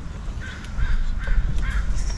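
A bird calling in a quick series of short, harsh calls, about four of them from half a second in, over a low rumble.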